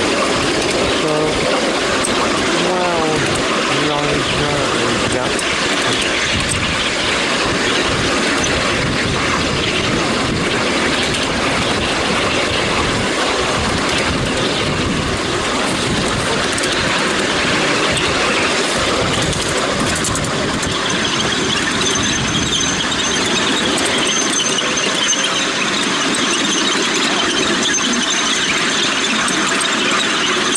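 Miniature railway train hauled by a miniature Intercity 125 locomotive running along the track, a steady loud running noise. Wavering squeals come in the first few seconds, and a thin high whine joins about two-thirds of the way through.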